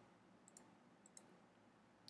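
Near silence with a few faint computer clicks: two close together about half a second in and one a little after a second.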